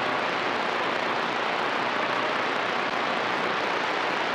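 CB radio receiver hiss: a steady rush of static from the speaker with no readable station coming through.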